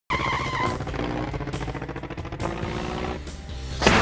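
Intro music with an engine-like vehicle sound mixed in. It starts abruptly and ends in a sudden loud swell just before the theme music takes over.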